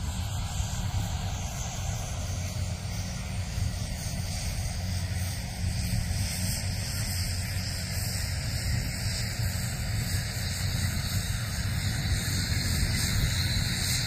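Distant drone of a SAAB B17A's single radial piston engine and propeller as the aircraft flies a circuit overhead. The sound is steady and grows slightly louder near the end.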